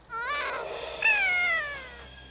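Cartoon moth creatures squeaking as they fly off: a few short rising chirps over a soft whoosh, then a long high-pitched cry that slides down in pitch, the loudest part, starting about a second in.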